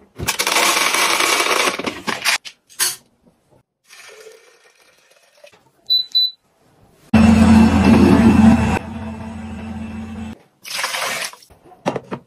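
Dried grains pouring out of a wall-mounted grain dispenser for about two seconds. Later a single beep from a touch control panel, then an electric soymilk maker's motor running for about three seconds, loud at first and then quieter.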